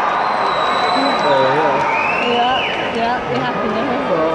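Arena crowd noise with a man's voice rising and falling over it, and high whistles: one held steady in the first second, and one that rises and falls about halfway through.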